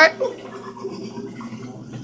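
Small dog making a quiet, rapid raspy hacking sound, which the owner wonders might be choking, over a low steady hum.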